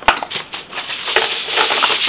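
Aluminium kitchen foil crinkling and rustling as a sheet is handled, with a sharp click just after the start and a few lighter ticks.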